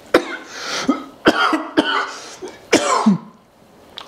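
A man coughing and spluttering in about four bursts over the first three seconds, reacting to the smell of a dog's fart.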